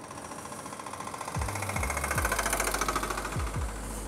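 A heavy diesel engine running close by with a rapid, even knock, growing louder about a second in and easing off near the end, over the motorcycle's wind and road noise.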